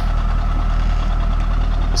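Chevrolet C5 Corvette's 5.7-litre LS1 V8 idling steadily, a low, even exhaust rumble, as the car creeps backward off the trailer.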